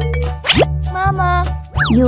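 Children's background music with cartoon sound effects over it: a quick rising glide about a quarter of the way in, a wavering tone, then a fast up-and-down boing-like glide near the end.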